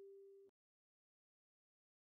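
Near silence: the faint last tail of a single kalimba note, G4, dies away in the first half second, then dead digital silence.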